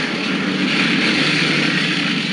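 A car driving close by on a wet farm track, its engine and tyre noise growing to a steady level as it passes.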